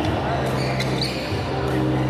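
Badminton-hall ambience: a few sharp clicks of rackets striking shuttlecocks and short high shoe squeaks on the court floor, over a steady hum and background voices.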